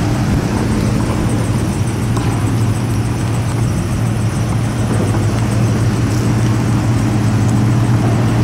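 Pickup trucks driving slowly past at close range, their engines running with a steady low hum under tyre and road noise.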